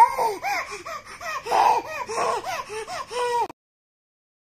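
Baby laughing and squealing in a quick run of short, high, rising-and-falling sounds, about three a second, cut off abruptly about three and a half seconds in.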